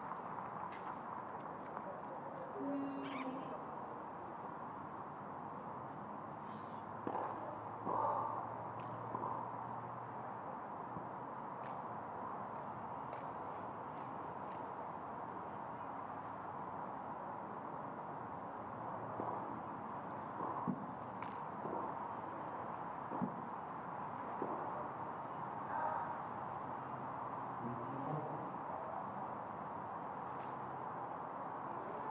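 Steady outdoor background noise around a tennis court, with scattered faint clicks and a few short calls.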